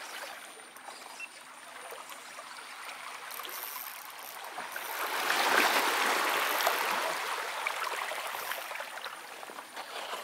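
Small sea waves washing over shoreline rocks, a hissing wash that swells to its loudest about five to seven seconds in and then ebbs.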